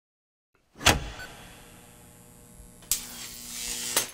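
Intro sting for an animated channel logo: a sharp hit with a humming electronic drone trailing off, then a second hit about two seconds later that swells up and cuts off abruptly.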